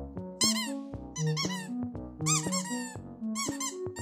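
Background music with a simple keyboard-like melody, over which a squeaky toy cake slice squeaks in several quick runs of high chirping squeaks as it is squeezed.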